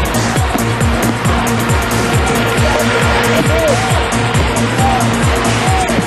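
Background music with a fast, steady, pulsing beat and sustained held tones.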